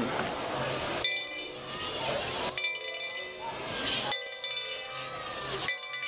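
A bell ringing in regular strokes, about one every second and a half, each ringing on until the next, from a passing trackless novelty train, with crowd voices underneath.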